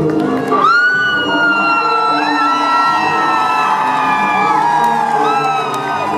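Live band playing a song's intro, with a crowd cheering and whooping over it. A long, high held whoop rises out of the crowd about a second in.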